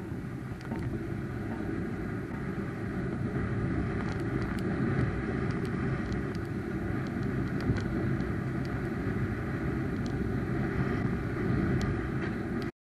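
Wind on the microphone and a snowboard gliding over snow behind a hand-held wing: a steady rushing noise, heaviest in the low end, with scattered faint ticks.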